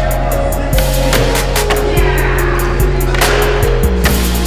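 Electronic music with a steady beat and bass line, over skateboard sounds: wheels rolling on a smooth skatepark floor and the board hitting a ledge a little after three seconds in.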